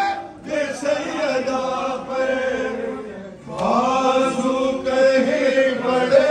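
Men chanting a noha, a Shia mourning lament, in long held phrases, with a brief pause about three and a half seconds in before the next line begins.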